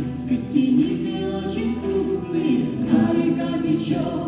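A live song: a woman and a man singing together to acoustic guitar.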